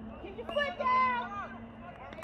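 Shouted voices from players and spectators, not clear enough to make out words, with one high, drawn-out call about a second in. A steady low hum runs underneath.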